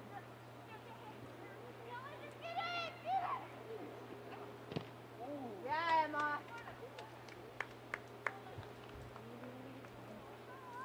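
Shouting voices on a soccer field, with two louder calls about three and six seconds in, and a few sharp knocks in the second half, over a low steady hum.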